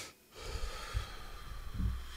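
A man breathing close to the microphone, with soft low thumps about a second in and again near the end.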